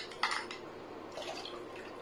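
Dissolved cocoa poured from a glass into a stainless steel bowl of cream and condensed milk: a faint liquid pour, with a light clink of glass or spoon near the start.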